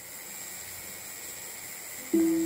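Steady room tone: an even hiss with a faint, thin high-pitched whine underneath, and no instrument or voice yet.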